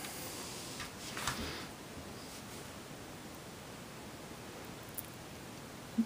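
Quiet room tone with a faint rustle about a second in and a small click near the end, from hands handling a plastic Lego brick model.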